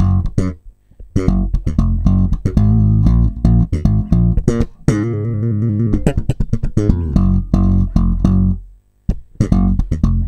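Electric bass guitar playing a funky slap riff: thumb-slapped and popped notes mixed with muted ghost notes, with short silent gaps between phrases. A fast trill rings in the middle.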